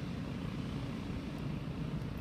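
Inland container vessel passing close by: a steady low drone from its diesel engine.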